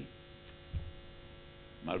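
Steady electrical mains hum in a pause in a man's speech, with one short low sound about three quarters of a second in. The voice resumes just before the end.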